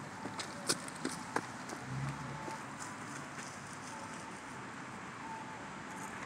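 Quiet outdoor background noise with a few light clicks and knocks in the first second and a half, and a short low rumble about two seconds in.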